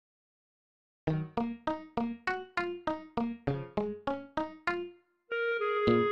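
Korg Triton Studio keyboard backing track: a piano-like chord struck over and over, about three times a second, each dying away, starting about a second in. Near the end the chords stop briefly and a held note comes in.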